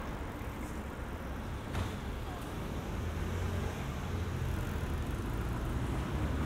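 Street traffic: a steady low rumble of cars and engines, with a single sharp click a little under two seconds in.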